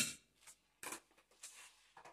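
A metal spoon knocking lightly against a stainless steel pan while chopped scotch bonnet peppers are added: a faint click, a sharper knock just under a second in, then a soft rustle.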